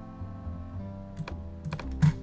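Quiet acoustic-guitar background music with held notes, with a few sharp computer-mouse clicks about a second in and near the end.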